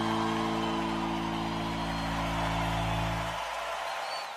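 Electric guitar in a live rock band holding a long sustained chord, which cuts off about three and a half seconds in, leaving a wash of noise that fades away.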